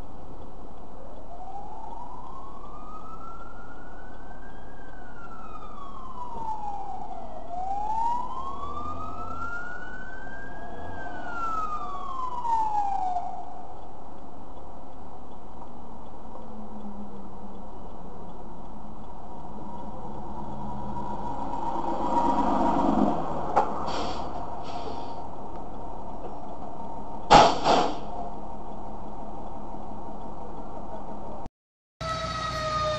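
Fire truck siren wailing in two slow cycles, each rising in pitch for a few seconds and then falling. A short loud blast comes near the end, over a steady background hum.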